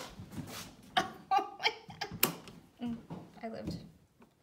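Old push-button wall light switch being pressed, giving a few sharp clicks, the loudest about two seconds in. Soft laughter and voices run around the clicks.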